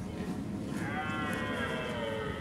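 Red deer stag roaring in the rut: one long, rough call that rises and then falls in pitch, starting under a second in.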